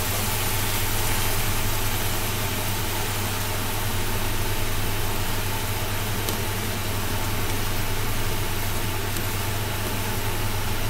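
Steady low mechanical hum with an even hiss over it, unchanging throughout, from a kitchen range-hood extractor fan running above a pan of minced beef and tomato sauce cooking on the stove.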